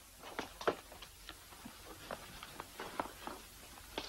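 Footsteps and shuffling of several people on a hard floor, heard as irregular soft knocks at uneven intervals.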